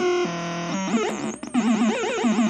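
DIY logic-gate feedback oscillator noise box making electronic tones as its knobs are turned: a steady buzzy tone drops in pitch, then gives way to fast chirping glides and a rapidly warbling, wavering pitch.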